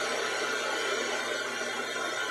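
Ghost box sweeping through radio stations, giving a steady hiss of radio static.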